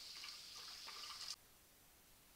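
Kitchen faucet running a thin stream of water onto soaked red lentils in a mesh strainer, a faint steady hiss that stops abruptly about a second and a half in.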